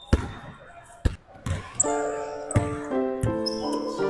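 A basketball bouncing on a hardwood gym floor, several separate bounces. Music with sustained keyboard notes comes in about two seconds in.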